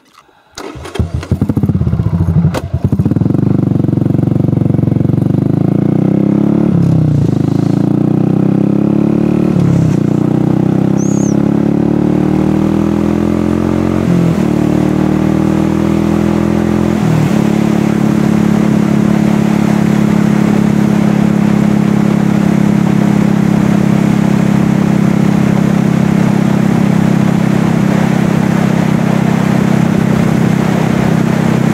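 Buell Blast 500's single-cylinder motorcycle engine pulling away hard about a second in, rising in pitch through four upshifts, each a short break in the note. It then settles into a steady cruising note for the second half.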